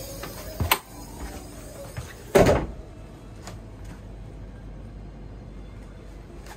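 Wooden companionway steps of a sailing yacht swung open to reach the engine compartment: a light knock under a second in, then a loud thump about two and a half seconds in.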